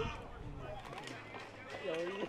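Faint talking: low voices, with the murmur of a ballpark behind them.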